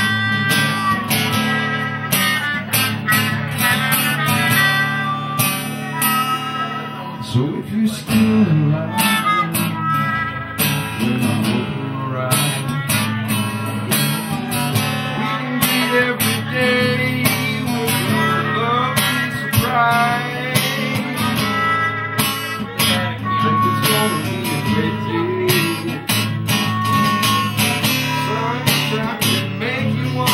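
Live band playing an instrumental break: a trumpet playing melodic lines over a strummed acoustic guitar.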